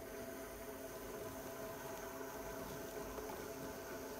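Pottery wheel running with a steady hum while a wire loop trimming tool shaves a continuous ribbon of clay from the base of an upside-down bowl, a soft, even scraping.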